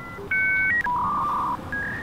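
A short run of electronic beeps, steady pure tones like telephone keypad tones. A two-tone beep comes about a third of a second in, then a lower, longer beep around the middle, and a short higher beep near the end.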